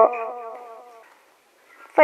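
Singing voice in Iu Mien song: a held, wavering note ends and fades away with echo into a short silence, and the next sung phrase starts right at the end.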